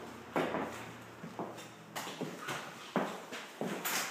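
Footsteps on a hardwood floor: a series of uneven knocks, roughly two a second.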